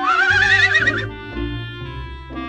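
A horse whinnying once for about a second, its pitch rising and then wavering as it falls, over background music.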